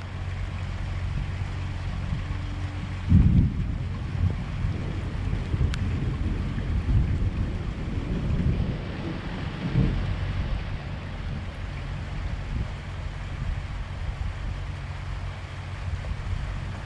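Wind buffeting the microphone in gusty storm weather, a dense low rumble over a steady low hum, with a single loud thump about three seconds in.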